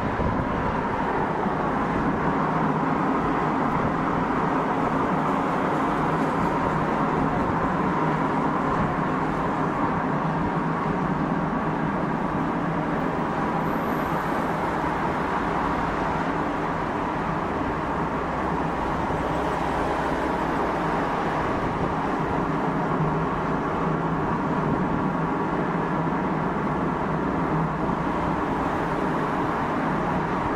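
Steady vehicle noise of cars driving on a road, an even rushing sound with no revving or sudden events.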